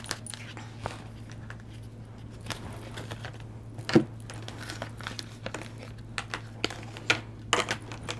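Tarot card decks handled and set down on a tabletop: scattered light taps and card rustles, a louder knock about halfway through and a quick run of taps near the end, over a steady low electrical hum.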